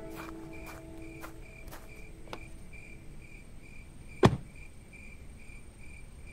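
The last notes of a song die away, leaving faint cricket chirping that repeats about twice a second, with a single sharp knock about four seconds in.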